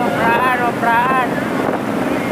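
Motorcycles rolling at low speed, among them a modified Honda Tiger drag bike with its single-cylinder four-stroke engine, with wind buffeting the microphone. A voice calls out twice over the engine and wind noise.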